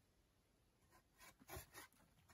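A small shovel's blade scraping the dry earthen wall of a dug cave, shaving off soil. The strokes are short and faint, about three of them, starting about a second in after a near-silent stretch.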